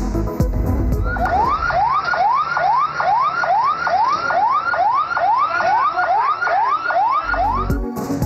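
An emergency vehicle siren sounding in quick rising sweeps, about two a second, starting about a second in and cutting off shortly before the end. A news music bed plays in the first second and comes back at the end.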